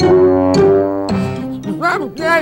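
Background music: notes struck at the start and again about half a second in, then held.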